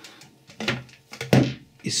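Handling noise from a moulded plastic mains plug and its cable being picked up and moved over a wooden desk: two short knocks about half a second and a second and a half in, with softer rustling between.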